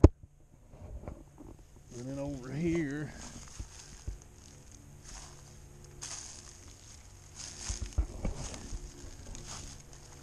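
Footsteps in dry leaves and grass on a woodland floor, with scattered rustles and soft ticks of twigs. A sharp click at the very start, and a brief murmur of a man's voice about two to three seconds in.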